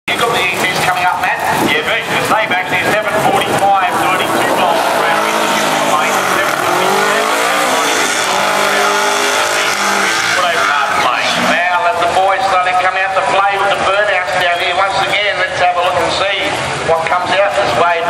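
Drag car doing a burnout: the engine revs hard, its pitch rising and falling, with the tyres spinning and squealing, from about five to eleven seconds in. Around it are other race engines running and the voices of the crowd.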